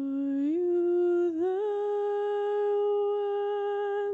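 A single unaccompanied voice singing a slow melody in long held notes, sliding up twice to a higher note that it holds steadily.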